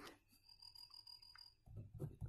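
Near silence, with faint strokes of a pen writing on paper.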